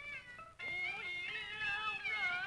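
Peking opera music: a drawn-out, sliding melodic line that breaks off about half a second in and starts again with a rising glide.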